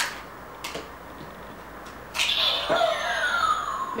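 Hasbro Yo-kai Watch toy recognising an inserted Yo-kai medal. A couple of light plastic clicks come as the medal goes in. About two seconds in, the watch starts its electronic summoning sound effect from its small speaker, with a falling sweep in pitch.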